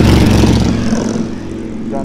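Cruiser motorcycle with a loud exhaust riding past close by, its engine note loudest at the start and fading away over the first second or so.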